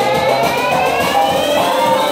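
Dance-pop track in a build-up: the drum beat drops out and a tone sweeps steadily upward in pitch over held chords.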